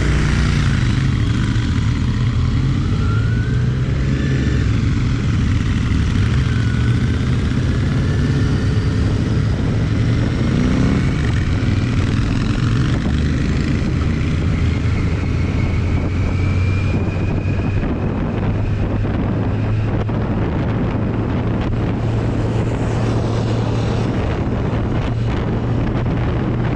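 Kawasaki Z900's inline-four engine running steadily at road speed, heard from the rider's seat, with wind rushing over the microphone. The engine note rises slowly through the middle stretch.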